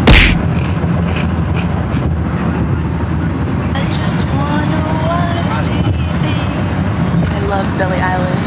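Steady low rumble of a moving car heard from inside the cabin. Right at the start, a loud crunch as someone bites into a crisp snack, followed by a few lighter crunches of chewing; later a voice sings quietly.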